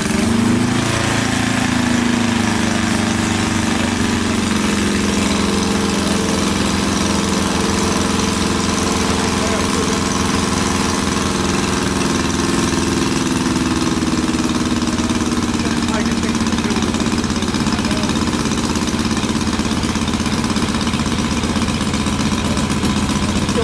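Miniature in-line four-cylinder model engine, a hand-built replica of the Gipsy Moth aero engine, running steadily with a rapid even firing beat. Its pitch climbs in the first second, then holds.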